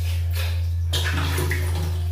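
Water splashing and slapping as hands scoop and rub water over a soapy face, in uneven bursts, over a steady low hum.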